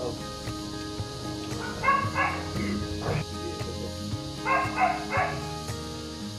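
Dog barking in short, high-pitched yips, twice about two seconds in and three times near the end, over steady background music.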